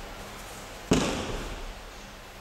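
One sharp slap on the tatami mat about a second in, ringing briefly in the large hall, as an aikido partner is held face down in a pin.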